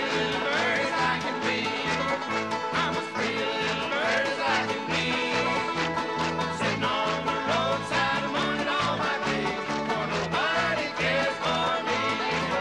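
Bluegrass string band playing an instrumental break, banjo and guitars picking quick notes over a steady bass beat.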